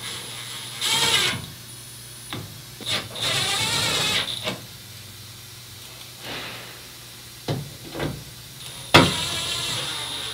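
Cordless drill-driver running in three short bursts as it drives set screws through a bracer into a van's sheet-metal wall: about a second in, again around three to four seconds, and near the end. A few short knocks and clicks come between the bursts.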